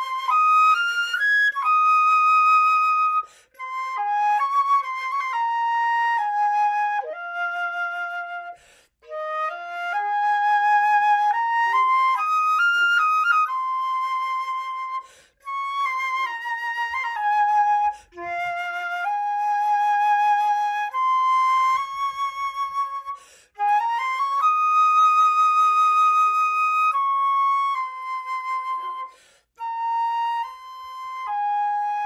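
Solo concert flute playing the first-flute part of a concert band piece: a melodic line of held notes and short runs, in phrases broken by brief breath pauses every few seconds.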